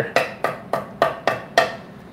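Chef's knife chopping leafy greens on a thick wooden end-grain cutting board: quick, even knocks of the blade on the wood, about three a second.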